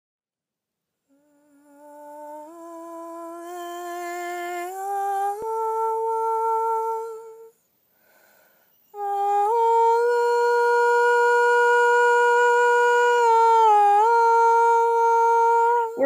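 A voice humming long held notes. The pitch climbs in a few steps over the first several seconds, breaks off, then holds one long steady note with a brief dip near the end.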